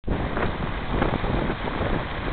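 Wind buffeting the microphone: a steady, rough rushing noise with most of its weight low down.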